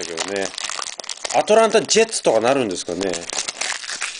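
Foil trading-card pack wrapper crinkling as it is handled, under a man talking.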